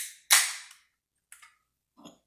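A 473 ml aluminium can of pilsner opened by its pull tab: a click at the start, then a sharp crack and hiss of escaping carbonation about a third of a second in, dying away within half a second. A faint click follows about a second later.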